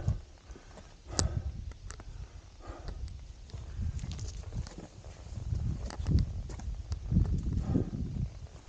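Wind buffeting the microphone in swelling gusts, with scattered knocks and scrapes of hands and boots on rock during a climbing scramble.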